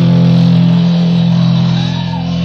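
Live swamp-blues rock band holding one loud, sustained chord on electric guitar and bass, the drums silent under it.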